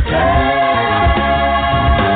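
Music with a choir singing, holding long chords over a steady bass line.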